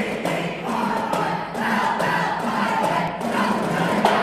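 A crowd of many voices shouting and chanting together, with sharp hits throughout.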